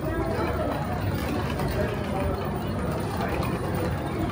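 Steady crowd sound in a busy pedestrian passage: indistinct voices and footsteps, with a wheeled suitcase rattling as it rolls over the tiled floor.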